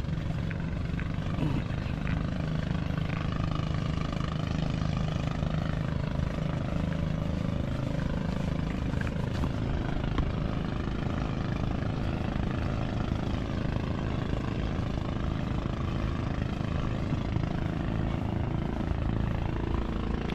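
A steady low engine drone that holds an even pitch throughout, with a rumble beneath it.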